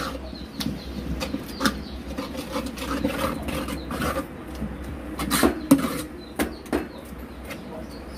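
A metal spoon stirring a watery dill-leaf bhaji in a steel pan, with irregular clinks and scrapes against the pan, over a steady low hum.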